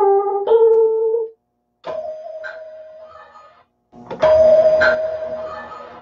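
Ensoniq Mirage 8-bit sampler keyboard playing sampled notes, lo-fi, from a faulty unit. A few notes come first and cut off, then two single held notes, each fading away, begin about 2 s and 4 s in.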